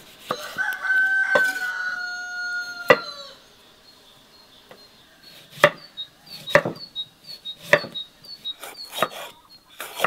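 A rooster crows once, a long call of about three seconds that drops in pitch at the end. Then a knife chops green bell peppers on a wooden cutting board in sharp knocks about a second apart, while a bird chirps faintly and repeatedly.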